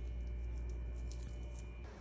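Steady low electrical hum with a faint thin high whine that stops near the end, and a few faint light ticks.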